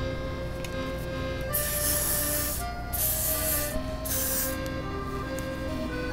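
Aerosol hairspray sprayed in two bursts of just over a second each, the first about a second and a half in and the second a moment after it. Background music with sustained notes plays underneath.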